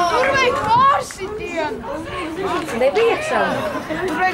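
Several high-pitched voices chattering and talking over one another close to the microphone.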